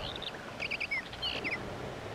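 A small bird chirping in short, high calls, a quick run of them about half a second in and a couple of falling chirps after, over a steady hiss.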